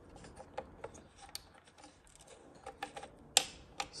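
Small, quick plastic clicks and rattles of the battery connectors and wiring being worked loose by hand, with one sharper click about three and a half seconds in.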